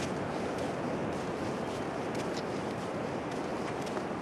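Steady wind rushing across the microphone, an even noise with no rise or fall.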